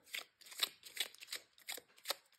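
A tarot deck being shuffled by hand: a quiet, fast, uneven run of short papery card snaps, about five or six a second.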